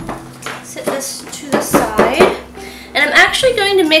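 A stick blender's head knocking and clinking against the sides of a plastic bucket as it stirs soap batter, an irregular run of knocks over the first three seconds.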